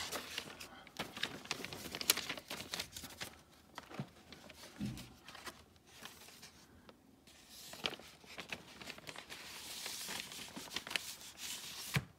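Paper and card rustling and sliding as a vinyl LP is put back into its paper inner sleeve and jacket, with scattered light clicks and taps of handling, and a longer sliding hiss a few seconds before the end.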